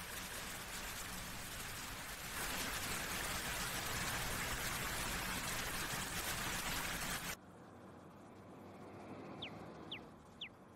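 Fountain water splashing into its basin, a steady rushing hiss that grows louder about two seconds in. It cuts off suddenly about seven seconds in, leaving quieter outdoor ambience with a few short high chirps near the end.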